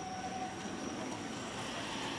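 Steady outdoor background noise with a constant thin, high-pitched tone running through it, with no distinct event.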